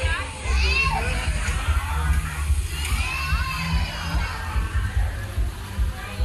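Children's high voices calling out and chattering among a crowd's chatter, over a steady low rumble.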